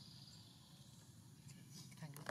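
Near silence: faint outdoor background hiss, with a few faint light rustles near the end.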